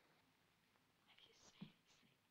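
Near silence with faint whispering about a second in and one soft thump near the end.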